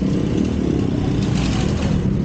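A steady low mechanical hum, with a brief rustle about a second in as the camera is moved.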